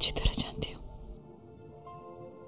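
A few quiet, breathy spoken words in the first second, cut off abruptly, then soft background music with faint sustained tones.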